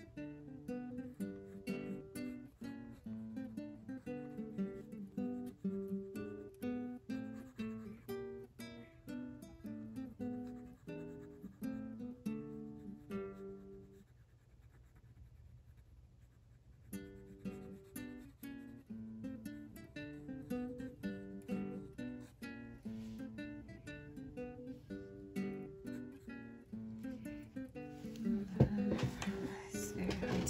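Background music of plucked acoustic guitar, a steady run of picked notes that drops out for a few seconds about halfway and then resumes. Near the end a louder burst of noise rises over the music.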